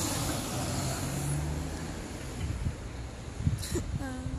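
A road vehicle passing: a steady rush with a low hum that eases after about two seconds, and a short knock near the end.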